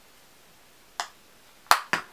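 Three sharp clicks from makeup items being handled: one about a second in, then two close together near the end.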